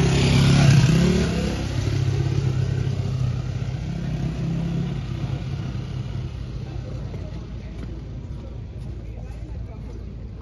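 A motor vehicle's engine passing close, loudest about a second in, then its running fading away over the following seconds.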